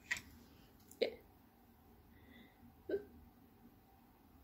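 A quiet room with a few brief vocal sounds from a woman: a soft murmured 'yeah' about a second in and another short mouth sound near the three-second mark, after a short click at the start.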